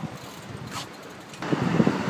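Outdoor street noise, a steady hiss that turns louder and heavier in the low range about one and a half seconds in.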